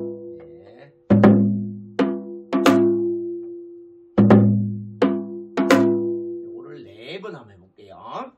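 Janggu, the Korean hourglass drum, playing the gutgeori practice pattern 'gugung da gidak': each phrase opens with a deep, ringing stroke and is followed by sharper strokes. The phrase comes twice, about three seconds apart. A voice is heard briefly near the end.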